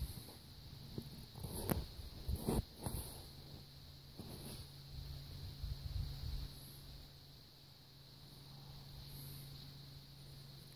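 A steady high-pitched chorus of insects at the lakeshore, with a steady low hum underneath. A few sharp clicks come between about one and a half and three seconds in.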